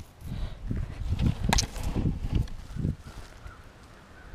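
Footsteps on grass and dead leaves: a run of dull thuds, about three a second, with one sharp click about a second and a half in.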